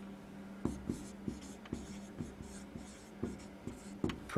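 Marker writing on a whiteboard: a quick, uneven run of short strokes and taps as the words are written out, over a faint steady hum.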